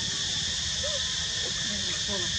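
Steady high-pitched insect drone over a low outdoor rumble, with a few faint short calls or distant voices in the middle.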